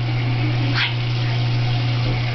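Water running from a sink tap over a steady low hum.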